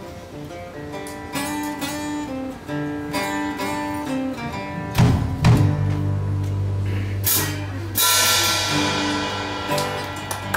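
Live blues band playing without vocals: picked guitar lead notes, then about halfway through a loud drum hit with a held low bass note and cymbal crashes, like the song's closing chords.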